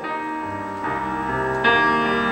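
Piano accompaniment playing alone with no voice, holding sustained chords. A new chord is struck about a second in and another near the end.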